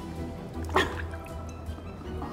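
Water splashing and dripping in a plastic tub as a head is pulled out during apple bobbing, with one sharper splash about three-quarters of a second in. Background music plays throughout.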